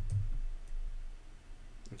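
A few computer keyboard keystrokes clicking, mostly in the first second, over a steady low hum.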